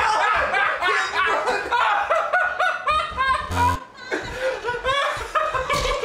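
Two young men laughing hard together, in repeated short bursts of laughter.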